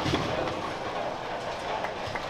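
Bowling ball rolling down a wooden or synthetic lane, a steady rumble with faint clicks.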